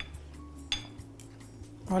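A fork and knife clinking against a plate as food is cut, with one sharp clink about three-quarters of a second in. Faint background music runs underneath.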